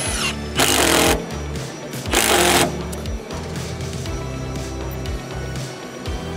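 Milwaukee M18 Fuel impact driver driving a long LedgerLOK structural screw into timber in two short bursts, each cutting out after about half a second. The driver is set on auto mode, which makes it stop early, so the screw is not driven home. Background music plays throughout.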